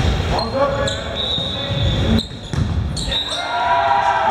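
Indoor volleyball rally on a hardwood court: sharp smacks of the ball being struck and bouncing, echoing in a large gym hall. Players' shouts are mixed in, with a longer shout rising near the end.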